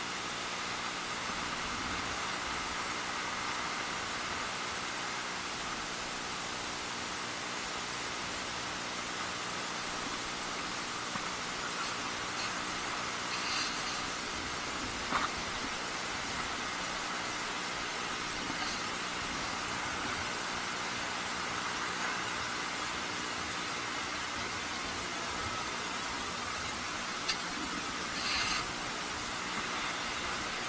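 A steady hiss throughout, with a few short scrapes and clicks about halfway through and near the end as a long-handled metal sand scoop digs into loose beach sand.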